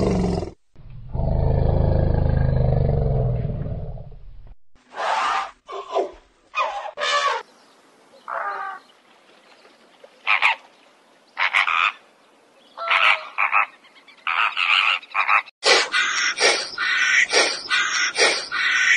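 An elephant gives a long, low call lasting about three seconds. Then come short, honking calls from a flock of flamingos, one by one at first, then crowding and overlapping near the end.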